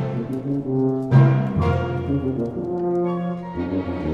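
Solo tuba playing a phrase of held notes with the orchestra, the loudest attack about a second in.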